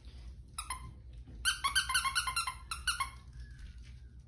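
Schnauzer puppies at play: a couple of short, high-pitched squeaks, then a quick run of about ten more in a second and a half.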